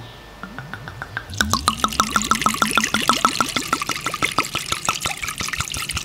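White rum glugging out of a Bacardi bottle into a glass jar of plums. After a quiet first second or so, the pour starts in quick, regular glugs with a gurgling pitch, and it runs on steadily.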